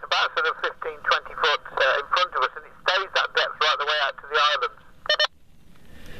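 A man's voice coming through a handheld walkie-talkie's speaker, thin and narrow-sounding, followed about five seconds in by a short beep as the transmission ends.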